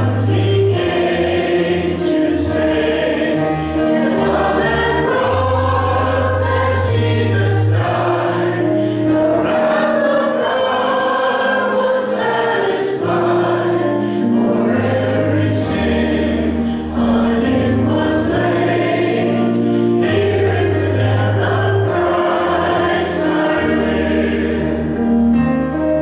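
A small mixed vocal group of men's and women's voices sings a gospel song in harmony over instrumental accompaniment with sustained bass notes.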